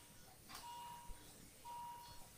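Faint electronic beeping from a bedside patient monitor. A steady tone about half a second long repeats roughly once a second, with a couple of light clicks between.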